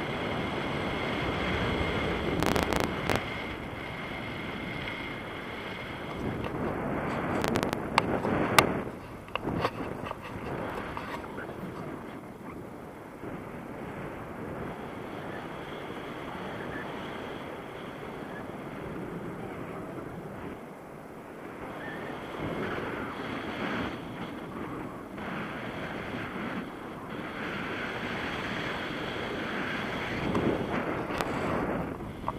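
Wind rushing and buffeting over the microphone of a camera carried in flight on a tandem paraglider, a steady gusting noise with a few sharp clicks about eight to nine seconds in.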